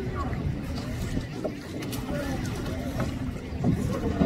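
Indistinct, distant chatter of several people with no clear words, over a steady low rumble of wind on the microphone.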